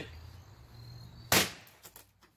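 A single loud, sharp crack about a second and a half in as a swung axe strikes wooden furniture, fading quickly.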